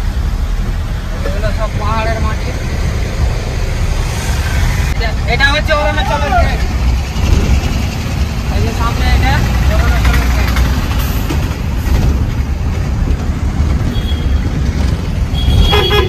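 Truck engine and road noise heard from inside the cab while driving: a steady low drone throughout.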